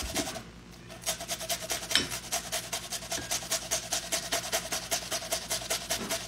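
A cucumber being grated on a metal box grater in quick, even rasping strokes, about five a second.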